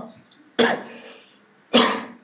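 A man coughs twice, about a second apart, heard over a video-call link.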